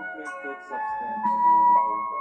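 Instrumental music from the close of a Khmer pop song: electronic keyboard notes over held chords that change about every half second, with one loud high note held near the end.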